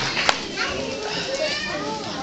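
Several young children chattering and calling out over one another, with a last clap or two of applause in the first moment.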